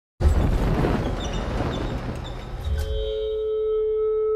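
Cinematic trailer sound design: a sudden dense noisy wash over a deep rumble, giving way about three seconds in to a steady ringing drone of held tones.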